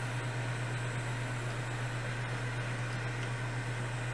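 Hot air rework station blowing at full power, a steady rushing hiss over a constant low hum, while it melts the solder holding an HDMI port to the circuit board.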